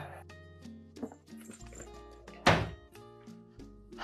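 Background film score of sustained, low, steady tones, with a single loud thump about two and a half seconds in.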